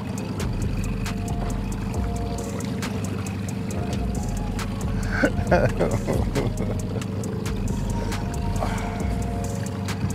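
Outboard motor running steadily at trolling speed, a low even hum, with brief voices about halfway through.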